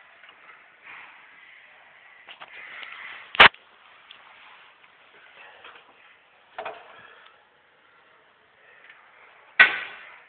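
Three sharp knocks over a faint rustle, the loudest about three and a half seconds in, another near seven seconds and a last one just before the end: a plastic toilet seat and lid being knocked while it is handled at close range.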